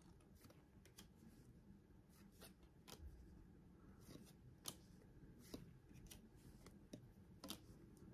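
Faint soft ticks and slides of baseball trading cards being flipped through by hand, one card moved from front to back at a time, a dozen or so scattered clicks, very quiet overall.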